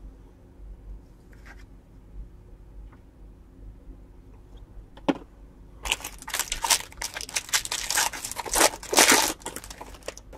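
A 2021 Topps Series 1 baseball card pack's foil wrapper being torn open and crinkled: a dense crackling burst lasting about three seconds, starting about six seconds in, after a faint click.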